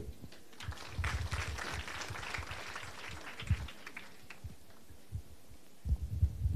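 Light audience applause for about three seconds, dying away, followed by a few low thumps.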